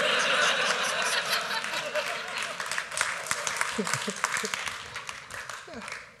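Audience laughing and clapping, loudest at the start and dying down over the last couple of seconds, with a few scattered voices.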